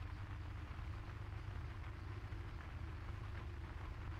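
Steady low hum and faint hiss of an old radio recording during a silent pause, with no distinct sound standing out.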